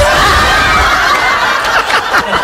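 Loud, sustained laughter with no break for about two seconds.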